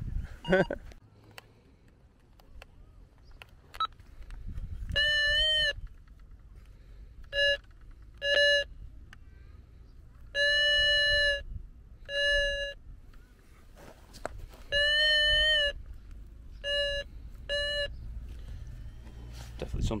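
Metal detector sounding a steady mid-pitched beep eight times at irregular intervals, some short blips and some held for about a second, as its coil is passed over a buried metal target in a dug hole.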